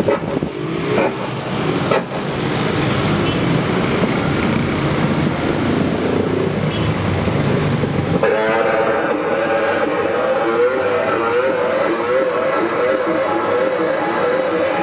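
Live harsh noise music: a loud, dense wall of distorted noise that, about eight seconds in, changes to a warbling, wavering pitched drone over the noise.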